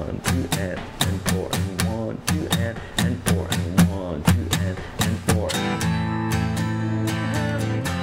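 Steel-string acoustic guitar strummed up to speed in a syncopated rhythm, accents on two and four with some strokes missing the strings on purpose, about four or five strums a second. A bit over five seconds in, the choppy strumming gives way to chords ringing on more smoothly.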